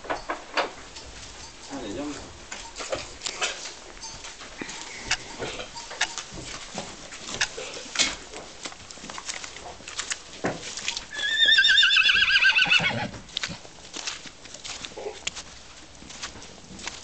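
A horse's hooves stepping in an irregular string of sharp clicks. About eleven seconds in, a horse gives one loud whinny lasting about two seconds, shaky and falling in pitch.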